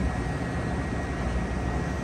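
Steady low hum of room machinery with a faint, thin steady whine above it.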